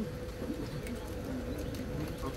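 A dove cooing in low, smoothly gliding notes, over a steady hum.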